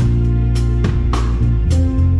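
A live band playing an instrumental passage: electric bass notes that change about once a second, with a drum kit keeping a steady beat.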